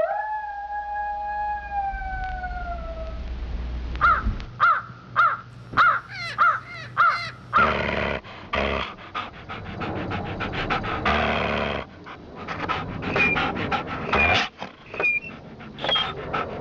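A canine howl, long and sliding slowly down in pitch over about three seconds, followed by a quick run of about eight yelps, then harsh, breathy panting-like noise for the rest of the time.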